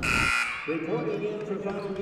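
A broadcast replay-transition whoosh right at the start, followed about half a second later by a steady, buzzing drone.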